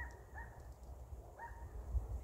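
Three faint, short animal calls, two close together at the start and one more about a second later, over a low steady rumble.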